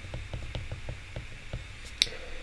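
A stylus writing on a tablet screen, making faint light ticks about four or five times a second as the strokes of the handwriting touch down.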